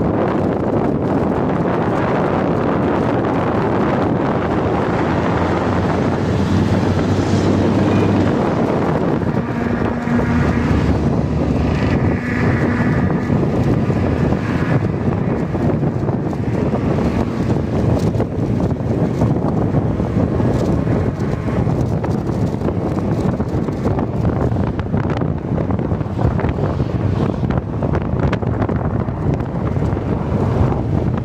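Wind rushing over the microphone of a moving motorcycle, with the motorcycle's engine running underneath and shifting in pitch now and then.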